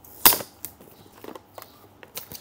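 A rigid cardboard product box being opened by hand: one sharp snap about a quarter second in as the lid comes free, then a few light handling clicks.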